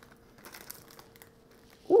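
Faint rustling and crinkling of packaging, with a few light ticks, as a cardboard gift box lid is lifted open over a plastic-wrapped toy.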